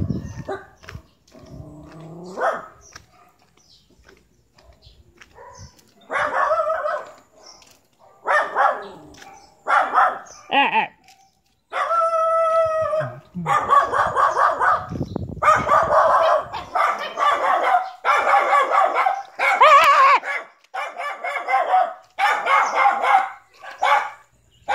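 A dog barking over and over in short barks, with one longer held cry about halfway through. In the second half the barks come almost without a break.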